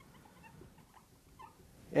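Dry-erase marker squeaking faintly on a whiteboard while a word is written: short, scattered little squeaks.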